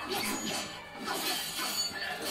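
Animated fight-scene soundtrack playing back: background music with crashing, shattering impact effects.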